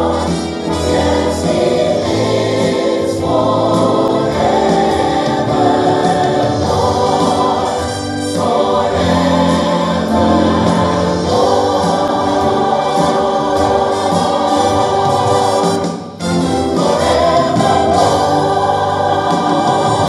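Background music: a choir singing a gospel hymn, with a short break about sixteen seconds in.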